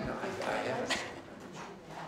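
Indistinct voices of a small group talking quietly while people are arranged for a group photo, fading lower in the second half.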